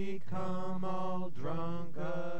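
Jug band music with long held notes and no words, the next note swooping up into pitch about one and a half seconds in.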